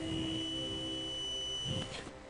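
A steady, high-pitched electronic tone with a fainter lower tone under it, held for almost two seconds and cutting off just before the end.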